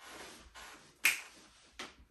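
Fingers snapping twice, sharp snaps about a second in and again near the end, after a faint hiss.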